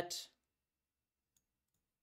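The tail of a man's speech, then near silence with a single faint click a little past the middle.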